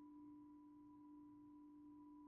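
Near silence, with only a faint, perfectly steady low hum and a fainter higher tone beneath it: electrical noise from a poor laptop microphone.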